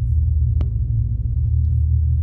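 A deep, steady low rumble, with one sharp tap about half a second in.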